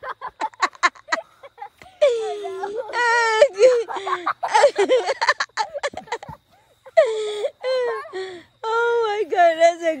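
A person laughing hard: quick short laughs at first, then long, high, drawn-out laughing cries that warble and shake, in several runs through the rest.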